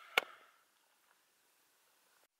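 A single sharp click as a hand grabs the camera close to its microphone, then near silence.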